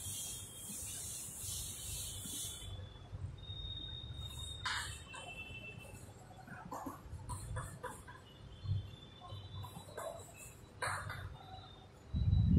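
A felt duster rubbing across a chalkboard for the first two or three seconds, then chalk tapping and scraping on the board in short strokes as words are written, with a few thin high squeaks.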